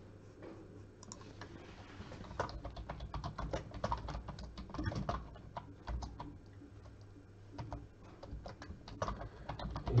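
Typing on a computer keyboard: a run of quick, irregular key clicks that starts about two seconds in and goes on, with a short lull near the end.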